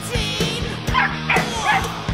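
Background music, with a black German Shepherd puppy yipping a few times as it tugs on a rag toy.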